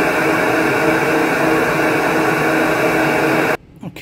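SuperFlow flow bench motors running steadily, pulling air through a Holley 850 carburetor, 340 intake and cylinder head at a test depression of about 28 inches of water. The run is a flow test reading about 189 CFM, and the motors cut off suddenly near the end.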